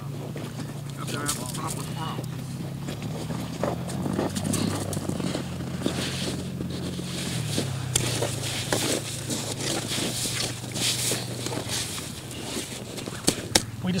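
Ice skimmer scooping and scraping slush and ice chips out of a freshly drilled ice-fishing hole, in short repeated scrapes. A steady low engine hum runs underneath, shifting pitch about halfway through.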